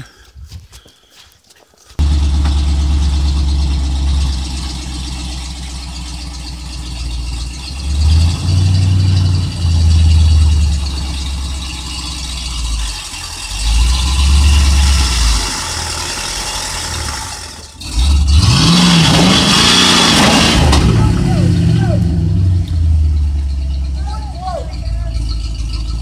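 A Ford F-series pickup's engine starting abruptly about two seconds in, then idling and revving up several times, with a louder, longer surge of revving later on.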